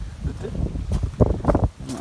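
Footsteps on gravel, several short scuffs about a second in, over wind buffeting the microphone.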